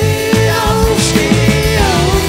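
A rock trio playing live: drum kit, electric bass and distorted electric guitars, with one long held note over the band that slides down near the end.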